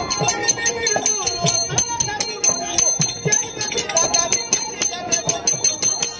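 Folk theatre accompaniment: a hand drum beating a quick steady rhythm, with metal bells jingling on the beats and a voice over it.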